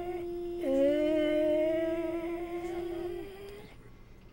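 A woman's voice holding a steady sustained vowel on one pitch, as for a laryngeal stroboscopy exam. A second held vowel, slightly lower and wavering, joins about half a second in; both stop shortly before the end.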